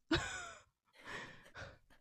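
Soft, breathy laughter from women: an exhaled laugh with falling pitch at the start, then a few quieter breathy bursts.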